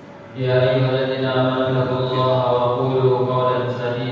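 A single man's voice chanting in long, held notes, typical of Arabic Quranic recitation. It starts suddenly about half a second in.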